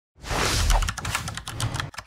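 Logo-intro sound effect: a sudden noisy rush with a low boom, then a fast clatter of clicks like typing keys that thins out near the end.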